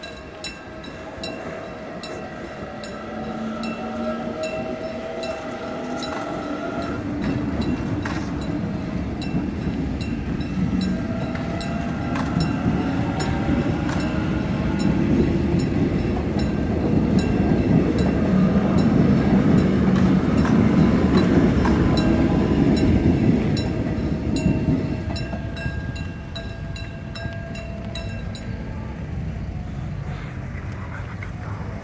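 Korail 311000-series electric multiple unit passing over a level crossing: its motors whine in tones that rise in pitch as it gathers speed, over the rumble of the wheels on the rails. The rumble builds to its loudest about two-thirds of the way through, then falls away as the last car clears. A level-crossing warning bell keeps up a steady ringing.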